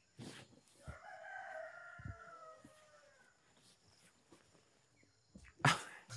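A rooster crowing once, a drawn-out call that falls away over about two seconds. Near the end comes a short, sharp burst of noise, the loudest sound here.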